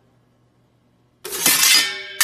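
A sudden loud crash like something shattering, starting about a second and a quarter in and lasting most of a second, after near silence with a faint low hum.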